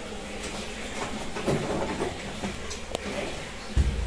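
Faint rustling and handling noises of parts being moved about on a workshop shelf, with one sharp click about three seconds in.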